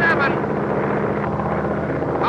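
Biplane's piston engine running steadily in flight, an even drone throughout, with a man's voice over it in the first moment.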